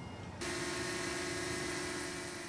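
DJI Mini 2 quadcopter hovering: the steady whine of its spinning propellers over an airy hiss. It starts suddenly a little under half a second in.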